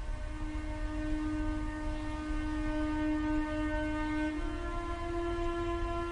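A steady, held electronic drone with many overtones over a low rumble. It steps slightly up in pitch a little past the middle.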